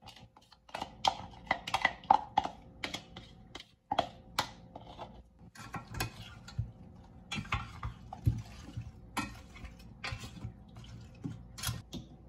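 Thick red chili sauce pouring in wet splats onto chicken and potatoes in a stainless steel pot, then a wooden spoon mixing the coated pieces, with squelching and knocks against the pot.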